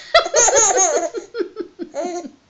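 A baby laughing, high-pitched, breaking into a run of short quick laughs in the second half.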